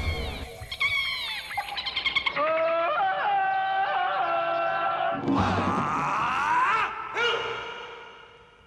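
Jingle from a jungle-themed TV show title sequence: music with high, wailing calls that glide up and down, a rising sweep about two thirds of the way in, then a fade-out near the end.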